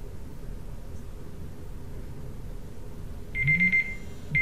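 Low room hiss, then about three seconds in an electronic countdown timer goes off: a burst of rapid, high-pitched beeps at a single pitch, signalling that the 30 seconds are up.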